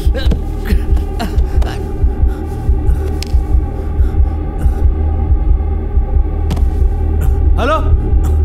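Horror film score: a loud low droning hum with a slow, heartbeat-like throbbing pulse, about once a second. A man's brief strained vocal sounds rise over it a few times, the clearest near the end.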